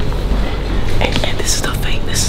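Whispered speech over background music with a steady low bass; the whispering starts about halfway through.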